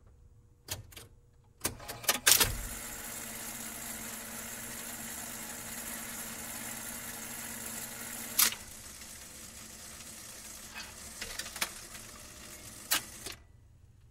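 Jukebox record changer clicking as a selection is loaded, then the stylus running in the record's lead-in groove: a steady surface hiss with a low hum and scattered crackles and clicks, cut off suddenly near the end.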